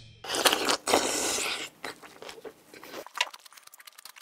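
Close-miked eating sounds of a man chewing a raw oyster. A loud, noisy stretch of mouth noise in the first second or two gives way to quiet, wet chewing clicks on the firm oyster flesh.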